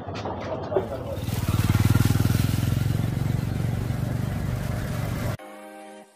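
A motorcycle engine running from about a second in, loudest at first and then easing slightly, until it is cut off suddenly near the end by music.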